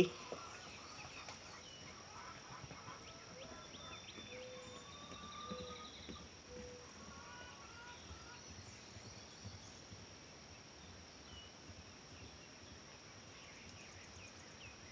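Faint rural ambience: a steady high insect drone, with scattered short bird chirps and whistles, including three short calls about a second apart near the middle.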